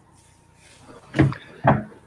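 Two short knocks or thuds, about half a second apart, a little over a second in.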